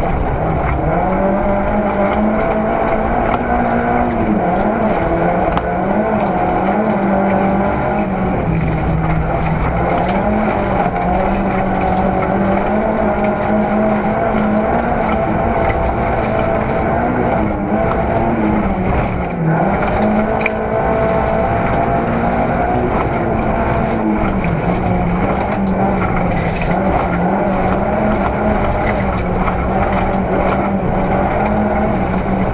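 Rally car engine at high revs, heard from inside the cabin. The note climbs and drops repeatedly with gear changes and lifts, with a deeper drop and recovery about two-thirds of the way through. Constant road noise from the tyres on the gravel stage runs underneath.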